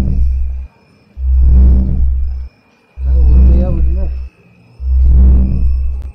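A spooky electronic sound effect: a deep pulse that repeats about every two seconds, with short near-silent gaps between pulses and a faint steady high whine. Over one pulse, about three and a half seconds in, a wavering voice-like sound rises and falls.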